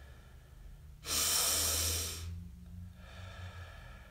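A man doing a yoga 'power breath': one loud, forceful rush of breath about a second in, fading away over about a second, with fainter breaths before and after it.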